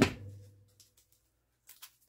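Artificial flower stems being handled: a sharp snap right at the start that rings briefly as it fades, then a few faint light clicks.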